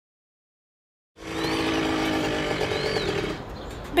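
A small motor scooter's engine running with a steady, even hum. It starts suddenly about a second in and drops away near the end, with two short high chirps over it.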